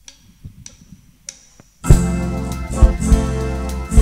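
A live band counted in with a few light clicks about 0.6 s apart, then coming in loudly about two seconds in: organ and electric keyboards over bass and drums, with heavy kick-drum thumps.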